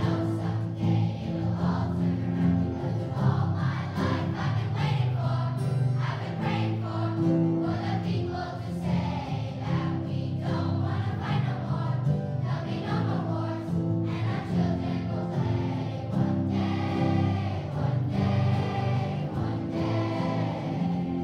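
Children's choir singing a song together, accompanied by acoustic guitar.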